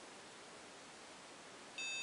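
Faint steady hiss, then near the end the Medusa ROM programmer's buzzer starts a beeping tune of stepped notes, signalling that writing the cleaned ROM to the MacBook is finished.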